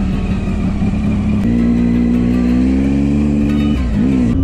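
Triumph motorcycle engine running under way. Its note steps up about a second and a half in and climbs slowly, then dips briefly near the end.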